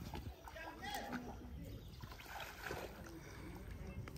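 Faint splashing and sloshing of shallow muddy water as rice seedlings are pushed by hand into a flooded paddy, with faint voices.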